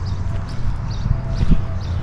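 Low rumble of camera handling with a few soft knocks and one sharper knock about one and a half seconds in: footsteps and handling noise as a handheld camera is carried across the garden.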